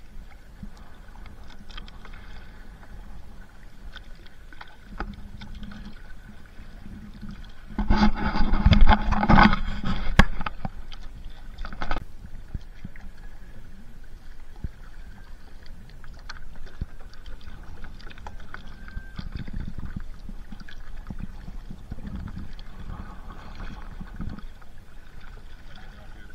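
Small waves lapping and splashing against a kayak hull close to the microphone, a steady wash of water noise. About eight seconds in, a much louder rush of splashing lasts about two seconds, followed by a couple of sharp knocks.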